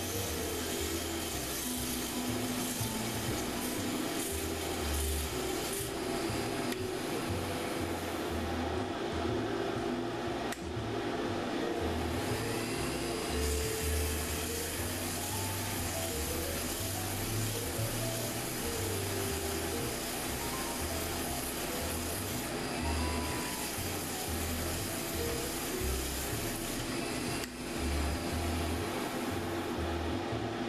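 Sandpaper rubbing against a cedar hand wheel spinning on a Central Machinery 8"×12" mini wood lathe. It makes a steady rubbing hiss over the running motor, as the chuck-jaw marks are sanded out.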